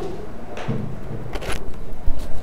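Shuffling and handling noise from people working at wooden classroom desks, with a few light knocks about one and a half seconds in.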